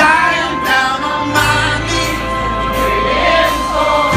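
Live rock band playing, with a male lead singer holding sung notes over electric guitar, keyboard and sustained bass. The bass note shifts lower about a second and a half in.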